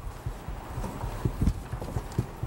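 Papers and objects being handled on a table close to a microphone: about half a dozen soft, irregular knocks and thumps with light paper rustling.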